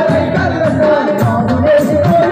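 A Telugu song sung live by singers into handheld microphones over a PA, with backing music carrying a steady low beat about twice a second.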